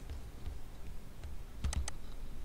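Computer keyboard being typed on: a short run of keystrokes, faint at first, then three quick clear taps near the end.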